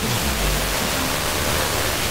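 FM radio static: a steady, loud hiss from a receiver tuned to a distant station as the meteor-scatter signal fades into noise between bursts, with only faint traces of the broadcast underneath.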